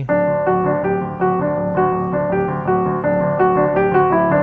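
Solo piano playing a verse riff on the notes D, F sharp and G over rocking left-hand octaves on D. The notes repeat steadily at about three a second over a held low bass.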